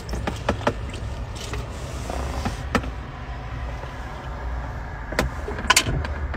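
Steady low hum inside a parked car's cabin, with a few sharp clicks and handling knocks, two of them close together near the end.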